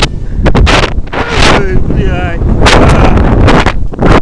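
Wind rushing over an action camera's microphone during a rope-jump freefall and swing: a loud rumbling buffet that comes in repeated gusts, with a few brief pitched cries mixed in.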